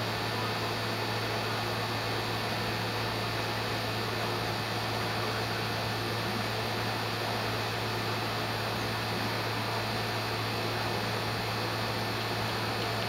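A steady hiss with a low hum under it; no distinct sound stands out.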